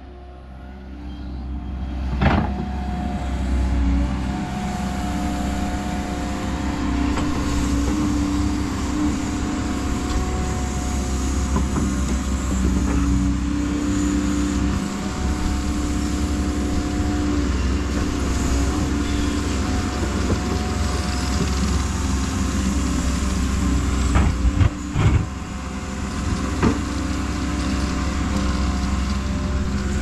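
Hyundai 140 tracked excavator's diesel engine running steadily under load while it digs, with the hydraulics whining as the boom and bucket work. A few sharp knocks, one about two seconds in and a cluster about five seconds before the end.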